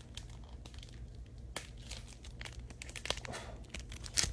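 Foil wrapper of a Pokémon booster pack being crinkled and torn open by hand: a string of scattered sharp crackles, a few louder than the rest.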